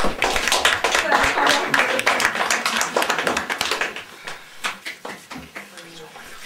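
Audience applauding, the clapping thinning out to a few scattered claps over the last two seconds.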